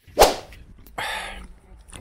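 A sudden sharp swish that falls in pitch about a quarter second in, followed by a brief softer hiss about a second in.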